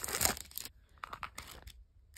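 Clear cellophane sleeve crinkling as a paper planner is slid out of it, then a few faint ticks of handling as the planner is opened.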